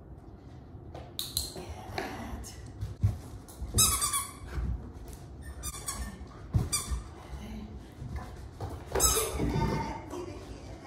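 A rubber squeaky dog toy squeaked in short bursts four or five times as a dog jumps and grabs for it, the last burst the longest, with a couple of dull thumps of paws landing on the rug.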